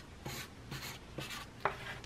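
Felt-tip marker drawing on paper in three or four short scratchy strokes about half a second apart, with a couple of light clicks between them.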